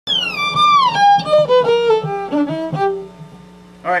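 Electric violin built from a baseball bat, bowed: it slides down from a high note into a quick descending run of short notes, stopping about three seconds in.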